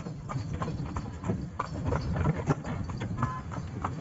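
Horse's hooves clip-clopping at a quick, uneven pace on a paved street as it pulls a tonga (two-wheeled horse cart), over a steady low rumble.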